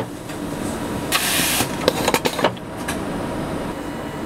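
Tucker TR 610 stud-welding head cycling: a half-second hiss of compressed air about a second in, followed by a quick run of sharp mechanical clicks, over a steady machine hum. The hiss and clicks fit a stud being blown through the feed line into the head's stud holder and seated against the length adjustment stop pin.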